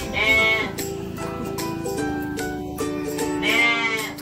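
Background music with steady held notes, over which a young animal gives two high bleating cries of about half a second each, one just after the start and one near the end.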